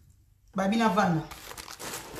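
A short gap, then a woman's brief voiced sound whose pitch rises and falls, followed by crinkling, crackling noise near the end.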